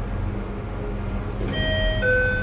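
Otis passenger lift with a steady low rumble from the moving car, then about one and a half seconds in an electronic arrival chime sounds as the car reaches the ground floor and the doors start to slide open.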